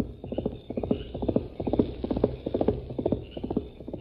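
Hoofbeats of a horse at a fast gallop, a radio-drama sound effect: a quick, steady run of clops, heard on an old, narrow-band broadcast recording.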